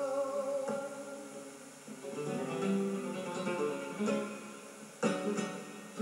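Flamenco guitar playing a siguiriya passage: plucked phrases and strummed chords, with a sharp strum about five seconds in and another at the end.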